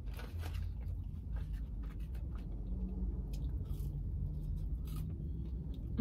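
Close-miked chewing of McDonald's french fries: soft, irregular crunches and mouth sounds over a low steady hum.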